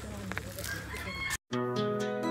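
Chickens calling for about the first second and a half, then a sudden cut to background music with sustained notes.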